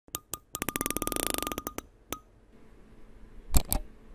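Animated intro sound effects: a fast run of electronic beeping ticks, about sixteen a second, as a loading counter climbs, then two loud hits near the end.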